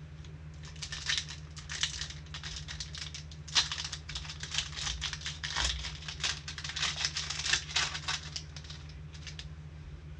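Foil wrapper of a Sage Hit football card pack crinkling and tearing as gloved hands rip it open, a dense, irregular run of crackles from about half a second in until shortly before the end.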